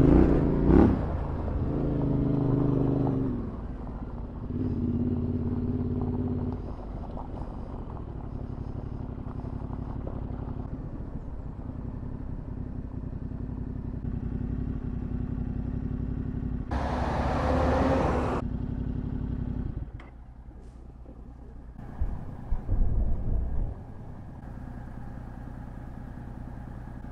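Yamaha Ténéré 700's parallel-twin engine revving in bursts over the first few seconds on a dirt track, then running at a steady lower note while cruising. About seventeen seconds in, a loud rushing noise lasts about a second and a half.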